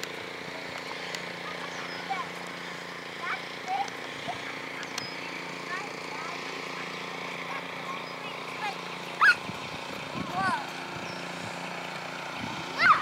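A steady low mechanical hum, like a distant engine, runs throughout, with scattered short high calls and a few louder brief voice-like squeals about nine and ten seconds in.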